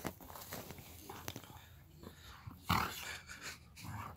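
A husky puppy and a white puppy play-fighting, with growls and scuffling; the loudest burst comes about three-quarters of the way through.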